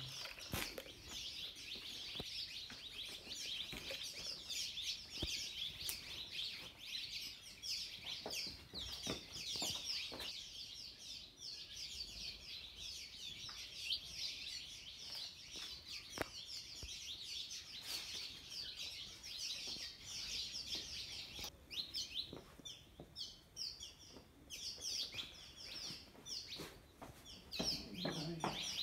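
A dense, unbroken chorus of many small high-pitched chirps from small animals, thinning slightly near the end, with a few faint knocks.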